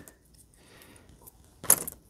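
Quiet handling, then a brief rattle of small hard plastic clicks about three-quarters of the way through, as a small plastic toy figure is handled.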